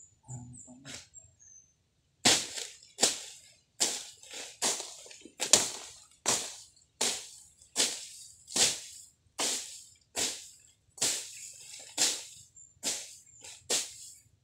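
Machete slashing through grass and weeds, swing after swing, roughly one or two strokes a second, starting about two seconds in.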